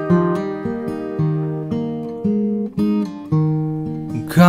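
Background song's instrumental passage: acoustic guitar chords strummed and ringing, with a new strum about every half second.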